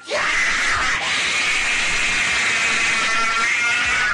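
Cartoon Super Saiyan power-up sound effect: a loud, steady rushing noise with a strained yell in it, cut off suddenly at the end.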